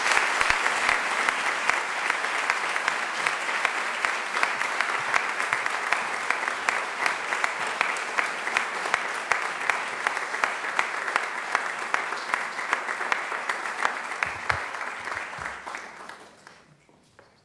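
Crowd applauding: a dense run of hand claps, strongest at the start, slowly thinning and dying away near the end.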